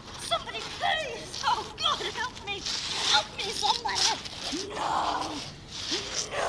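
A woman crying out over and over in short, high-pitched, wavering yells with no clear words.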